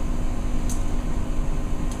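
Steady background hum of room noise, with two faint short clicks from the pennies being handled and dropped into the cup, one under a second in and one near the end.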